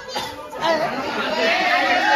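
Crowd chatter: many voices talking over one another at once, growing louder about half a second in.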